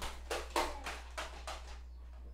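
Computer mouse clicking, about six soft clicks roughly three a second that stop shortly before the end, over a low steady electrical hum.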